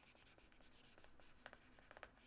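Near silence with faint ticks and scratches of a stylus writing on a tablet.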